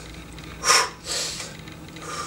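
A man's sharp breath out with the effort of a resistance-band pulldown rep, short and sudden, about two-thirds of a second in. A softer breath trails after it.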